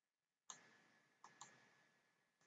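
Three faint computer mouse clicks: one about half a second in, then two close together just past a second.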